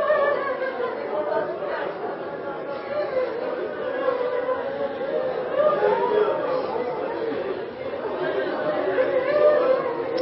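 Many voices sounding at once: a continuous, unintelligible blend of overlapping speech with a partly sung quality, with no single clear speaker.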